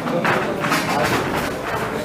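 Boxers exchanging punches and moving on the ring canvas: a quick run of thuds and taps, several a second.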